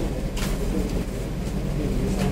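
Steady low background hum, with a brief soft rustle about half a second in.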